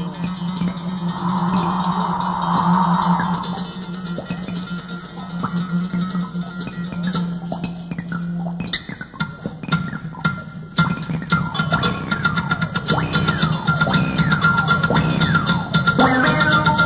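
Progressive rock trio of keyboards, bass or guitar and drums playing live. A sustained low note holds through the first half. Just past halfway, rapid percussive hits and quick gliding runs of notes come in and build toward the end.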